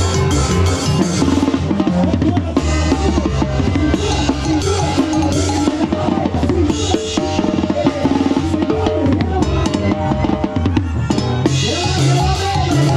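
Tarolas, a banda drummer's kit of chrome-shelled snare drums with cymbals, played with sticks in quick strokes and fills, close to the drums. Under them the band's brass holds sustained notes.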